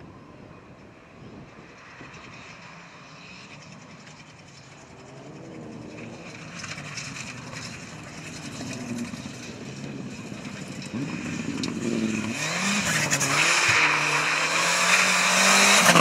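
Mitsubishi Lancer Evolution rally car's turbocharged four-cylinder engine approaching at speed, its pitch rising and falling several times through gear changes and lifts. It gets steadily louder until the car passes close by at the end.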